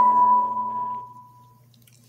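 A closing logo sound from a music video played on a TV: one clear ringing tone that fades out over about a second and a half, leaving a faint low hum.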